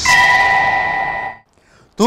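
A short, bell-like chime of a broadcast transition sound effect. It strikes suddenly, holds a steady ringing tone and fades out after about a second and a half.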